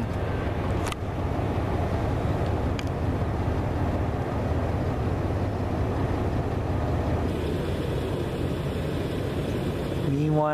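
Steady low rumble of a diesel freight train, with two faint clicks in the first few seconds.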